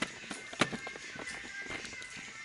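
Handling noise from a handheld camera moving close against the body and dress: a run of irregular clicks and rubbing knocks, the loudest about a third of the way in. Background music plays faintly underneath.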